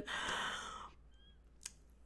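A woman's audible breath, lasting under a second and fading out, then near silence with one faint click.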